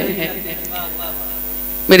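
Steady electrical mains hum through the stage's microphone and sound system, heard plainly in a pause between a woman's spoken words.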